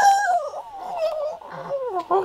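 Two drawn-out, high-pitched vocal cries, the pitch wavering and sliding downward in each.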